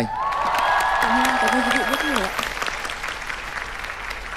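Applause from the studio audience and judges: steady hand clapping, with voices calling out over it in the first two seconds, tapering off toward the end.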